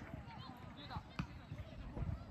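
Distant shouts of players on a football pitch, with one sharp thud of a ball being kicked a little over a second in.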